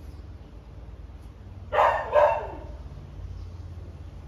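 A dog barking twice, half a second apart, the second bark falling in pitch, over a low steady hum.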